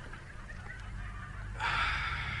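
A man's loud, rasping, honk-like vocal sound, beginning about one and a half seconds in and lasting over a second, over a low hum.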